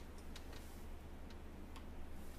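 A few faint, irregularly spaced light clicks from small objects being handled at a table, over a low steady room hum.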